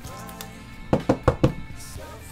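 A quick run of five or six sharp plastic clicks and taps about a second in, from a rigid clear plastic card top loader being handled. Quiet background music plays underneath.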